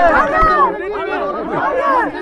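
Several people talking over one another at close range: overlapping chatter of voices in a tight crowd.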